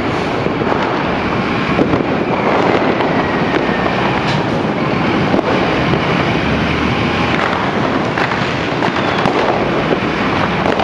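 Fireworks and firecrackers crackling and banging without a break, over the low rumble of a fire engine pulling out, which is strongest about two-thirds of the way in.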